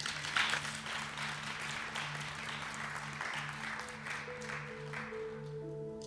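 Congregation applauding, with a soft held chord of background music underneath. The clapping dies away about five seconds in as higher sustained notes join the chord.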